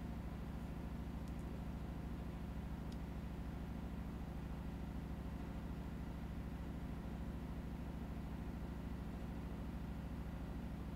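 Faint steady hum of a Titan TN-1341 cylinder-arm industrial sewing machine's motor, unchanging throughout.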